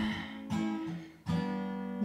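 Acoustic guitar played live and unamplified: a chord rings and fades, then a new chord is struck a little over a second in and left ringing.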